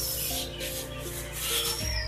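Hands rubbing and scraping at a cement-filled flower-pot mould in several short rasping strokes, over background music.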